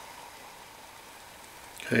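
Faint steady hiss of a pot of water at the boil over a burning methanol alcohol stove.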